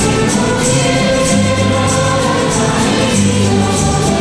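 Church choir singing a hymn with guitar accompaniment over held bass notes, with a steady high percussion beat of about four strikes a second.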